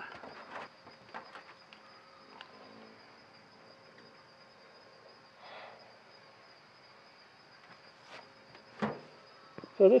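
Steady high-pitched chirring of insects in the background, with faint scattered clicks and rustles of handling and a sharper click near the end.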